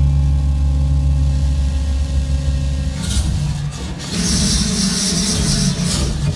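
Live electronic music. A deep bass drone holds steady for about the first three seconds, then harsh noise washes come in over it.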